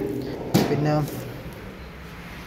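A man's voice speaking a couple of words, with one sharp knock about half a second in.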